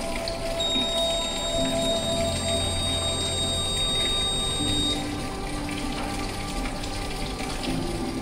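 Water-level indicator's alarm buzzer sounding a steady high-pitched tone. The alarm signals that the tank's water level has gone above 80% or below 20%. It stops about five seconds in, when its silence button is pressed.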